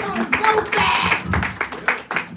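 A small group of people clapping their hands, with voices mixed in.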